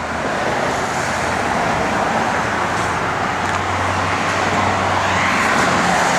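Steady motor-vehicle noise: an even rush with a low hum beneath it, swelling slightly near the end.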